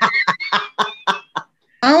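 Laughter: a quick string of short laughing pulses, about eight in a second and a half, that dies away.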